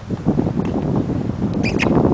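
Wind buffeting the microphone as a rough, low rumble, with two short high-pitched chirps near the end.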